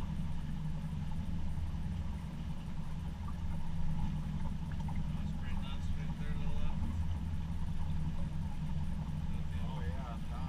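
A boat's motor running steadily as the boat cruises slowly, a low, even hum.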